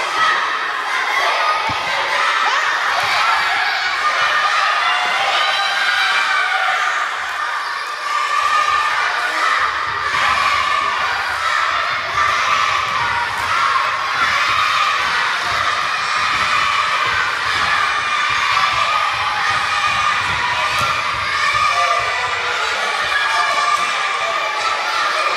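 Many children shouting and cheering at once, a steady, loud crowd of young voices in a large sports hall.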